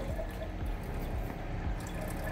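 Water pouring in a steady stream from a plastic graduated cylinder into a glass beaker.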